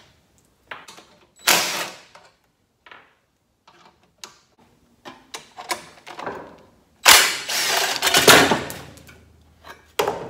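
Cordless drill/driver whirring in short bursts as it backs screws out of a small generator's plastic recoil starter housing, with clicks and plastic clatter as the housing is worked loose. The longest and loudest run comes about seven seconds in.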